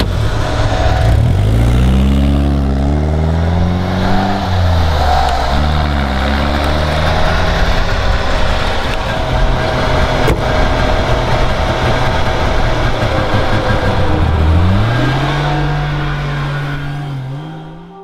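A classic car's engine revving and pulling away, its pitch rising in steps as it accelerates through the gears, then running at a steady speed before climbing once more near the end. The sound fades out at the very end.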